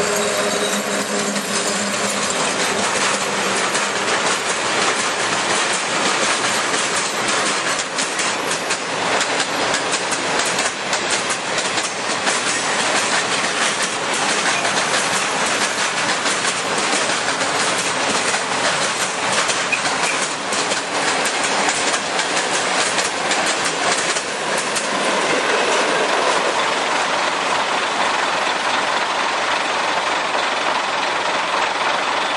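Freight train hauled by an electric locomotive rolling past close by: a continuous heavy rumble and rattle of wagon wheels with rapid clacks over the rail joints. A low steady hum from the locomotive fades out in the first couple of seconds.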